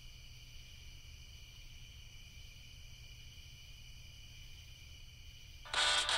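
Steady night-time chorus of crickets, several high pitches held at once. Near the end, music comes in suddenly and much louder.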